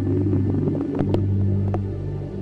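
Ambient background music: low sustained droning notes with a few faint clicks over them.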